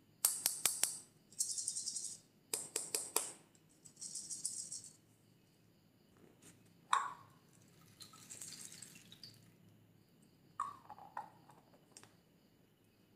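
Small foam beads rattling inside a clear plastic ball container as it is shaken in four quick bursts. Later come a few sharp clicks and taps of the plastic shell as its halves are handled and pulled apart.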